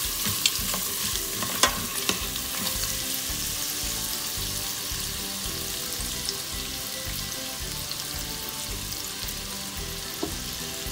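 Sliced onions frying with cashews and garlic in a stainless-steel Instant Pot insert on sauté mode: a steady sizzle, with a few light clicks of the stirring utensil against the pot in the first two seconds.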